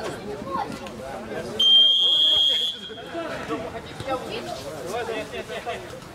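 A referee's whistle: one steady, shrill blast lasting about a second, starting a little over a second and a half in, signalling the kick-off from the centre spot.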